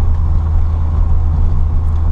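Peugeot 205 Dimma's engine and road noise heard from inside the cabin while cruising, a steady low drone with no change in pace.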